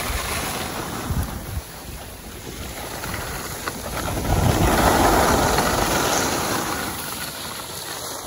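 Wind noise on the microphone and skis scraping over groomed snow while skiing, a steady rushing that swells to its loudest about four to six seconds in.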